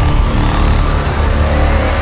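Cinematic logo-sting sound design: a deep, loud bass rumble with a synth sweep rising steadily in pitch.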